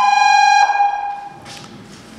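A Volvo FL fire engine's horn sounding a steady two-note chord, which stops and dies away about a second in.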